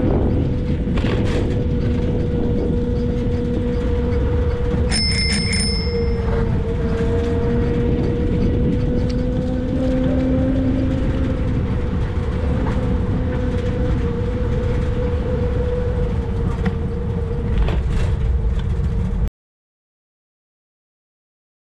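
Trike riding on a paved path: steady rumble of wind and tyres with a hum that drifts slightly in pitch. A bicycle bell rings several quick times about five seconds in. The sound cuts off suddenly near the end.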